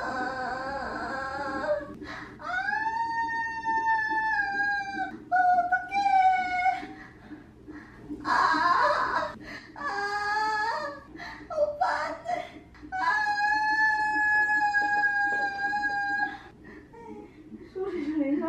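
A woman in labour crying out in pain: a series of long, high wails, each held for two to three seconds, with short pauses for breath between.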